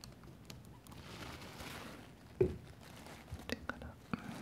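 Close-miked handling noises of fingers and a tissue: faint rustling, a single soft thump a little past halfway, then a few quick sharp clicks near the end.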